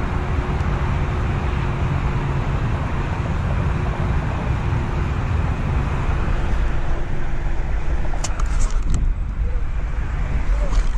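Steady low rumble of outdoor background noise, with a faint hum for most of it and a few faint clicks about eight seconds in.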